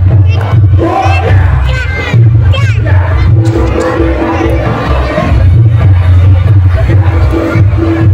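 Loud live accompaniment for a jathilan (kuda lumping) horse dance, with a steady deep pulse underneath. Voices shout sweeping cries about a second in and again near three seconds, over crowd noise.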